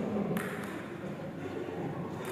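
A table tennis ball gives a single sharp click about a third of a second in.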